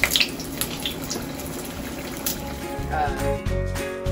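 Spring rolls shallow-frying in hot oil in a pot, a steady sizzle, as tongs turn them. About three seconds in, background music with a beat comes in.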